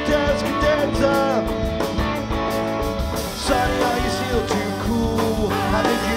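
Live rock band playing an instrumental passage: electric guitars, bass guitar and drum kit, with a lead line that bends up and down in pitch.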